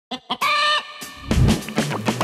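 Two short chicken clucks and a brief held squawk, followed just past halfway by music with drums and bass.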